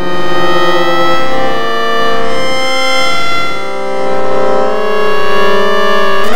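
Electronic music from the DIN Is Noise microtonal software synthesizer: a dense chord of several tones held steady, its loudness swelling and dipping slowly.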